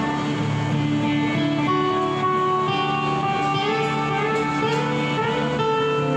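Live rock band playing an instrumental passage with no vocals. An electric lead guitar holds long sustained notes that step upward in pitch through the second half, over a rhythm guitar.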